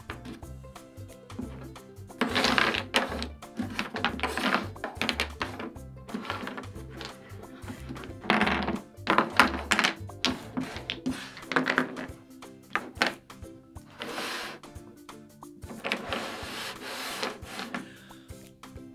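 Background music playing under wooden toy blocks clacking and sliding on a tabletop in several short bursts as they are sorted by hand into piles.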